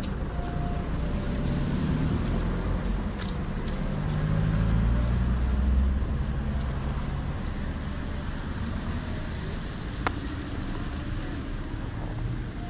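Road traffic: a motor vehicle's engine running close by, a low rumble that swells about four to six seconds in and then settles. A single sharp click about ten seconds in.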